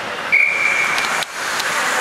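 Ice hockey referee's whistle: one steady, high, shrill blast lasting under a second, stopping play, over a steady wash of rink and crowd noise.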